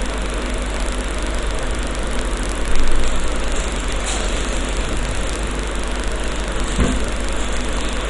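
Steady hiss with a constant low hum beneath it, and a short soft knock about seven seconds in.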